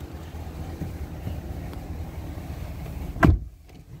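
Ford 6.7-litre Power Stroke V8 diesel idling with a steady low rumble. A little past three seconds in comes one loud thump, the driver's door shutting, after which the engine sounds much quieter and muffled.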